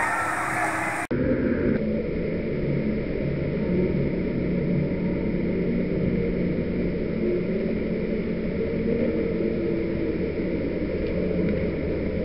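About a second in, the sound cuts to a low, steady rumble: pool and swimming noise slowed down for a slow-motion replay.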